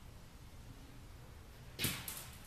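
A single short knock near the end, over a low steady shop hum: a heavy lathe chuck bumping against the lathe as it is worked onto the spindle.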